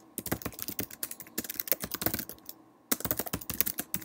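Fast typing on a computer keyboard: one run of keystrokes, a short pause about two and a half seconds in, then a second quick run.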